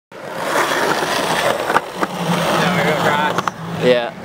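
Skateboard wheels rolling over concrete with a steady rumble, and a few sharp clacks of the board about halfway through and near the end. Voices talk in the background in the second half.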